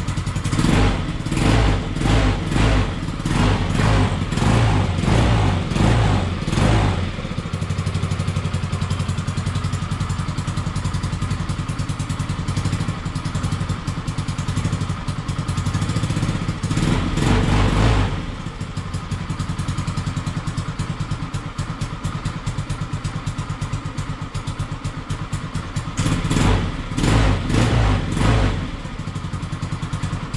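Peugeot Django 125 scooter's single-cylinder four-stroke engine running just after finally starting on a replacement carburettor, fitted to cure hard starting and poor running. It is revved in a quick series of blips at first, settles to a steady idle, and is revved up again twice.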